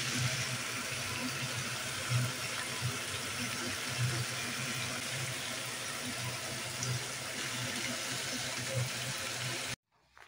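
Potato chunks and onion frying in oil in an aluminium pan, a steady sizzle with a low rumble under it.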